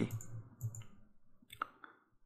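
A computer mouse clicking a few times, the sharpest click about one and a half seconds in and a lighter one just after.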